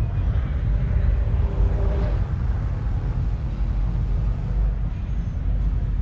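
Deep, steady low rumble of a sci-fi spaceship engine ambience, with a soft hiss swelling and fading in the first two seconds.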